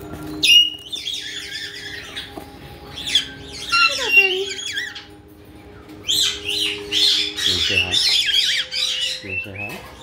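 Caiques calling: a run of high, quickly gliding parrot calls, with a short lull about halfway through before a denser burst.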